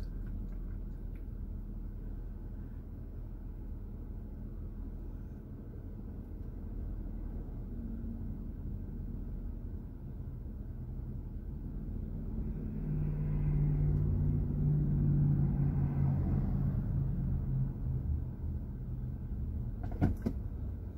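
Low, steady rumble of a car idling while stopped in traffic, heard from inside the cabin. A louder low hum swells in a little past the middle and fades again before the end.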